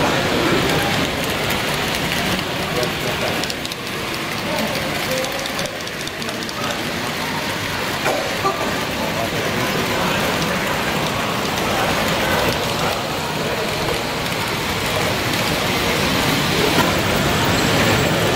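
Steady indistinct babble of many voices in a busy room, with the running noise of N-scale model trains on the track.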